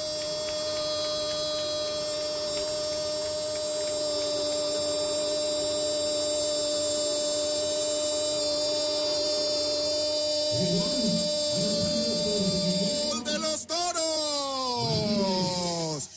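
A radio football commentator's drawn-out goal shout, held on one steady pitch for about thirteen seconds, then sliding down in pitch and breaking up near the end. A second man's voice talks underneath in the last few seconds.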